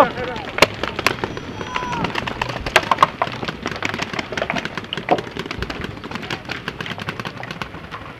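Paintball markers firing in rapid, irregular shots, with paintballs hitting bunkers close by. The sharpest cracks come in the first three seconds, then the popping goes on fainter and steadier.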